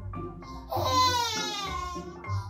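A three-month-old baby crying: one long wail beginning under a second in and falling in pitch, over background music with plucked guitar notes.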